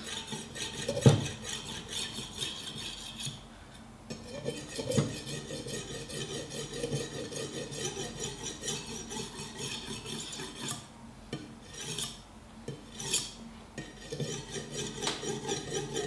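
Steel kitchen-knife blade being stroked again and again across the unglazed foot ring of an upturned ceramic mug, a gritty scraping of steel on ceramic as the edge is ground and sharpened, with steel being worn off onto the mug as grey streaks. A sharp knock sounds about a second in, and a smaller one a few seconds later.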